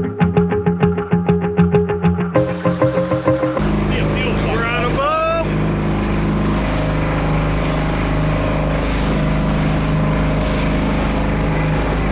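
Music with a quick plucked beat for the first few seconds, then an abrupt cut to a motorboat under way: a loud, steady engine drone with wind rumbling on the unshielded microphone. A voice calls out briefly about four to five seconds in.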